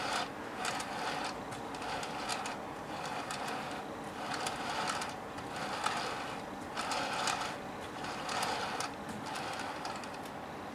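Small clicks and rubbing of a VF-1A Valkyrie transformable toy figure's plastic and metal parts as it is handled and turned, coming in irregular clusters about a second apart.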